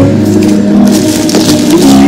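Thin plastic bag crinkling and crackling as a bag of ambok (flattened rice) is handled and lifted, denser in the second half, over steady background music.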